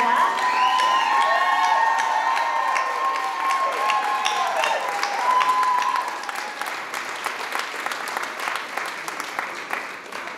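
Banquet audience applauding and cheering, with drawn-out whoops over the clapping for the first half; the applause then thins and fades away toward the end.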